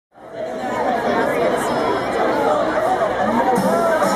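Crowd chattering in a large hall, many voices overlapping. A low steady note comes in near the end.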